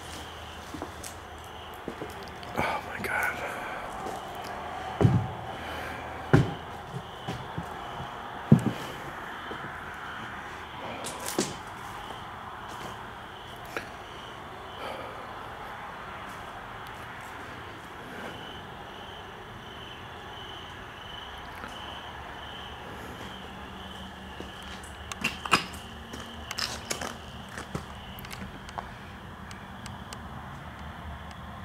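Footsteps and handling thuds among loose boards and debris: three sharp thumps in the first ten seconds and a cluster of clicks and knocks near the end. Under them runs a faint, steady high chirp that pulses about twice a second.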